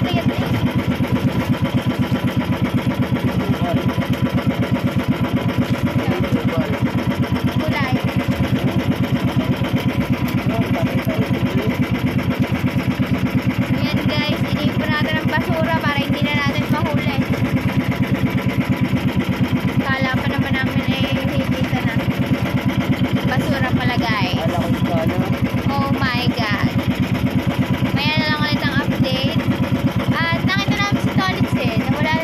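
Small outrigger fishing boat's engine running steadily under way, a loud, rapid, even pulse with no change in speed. A woman's voice talks over it at times.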